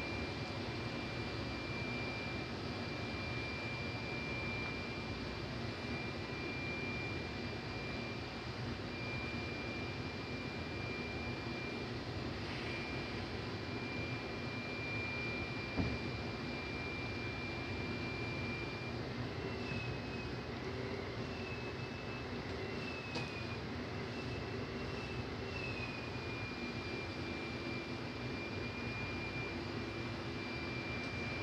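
A steady machine drone: an even rushing roar with a low hum and a constant high-pitched whine that wavers for a few seconds past the middle. One short knock about halfway through.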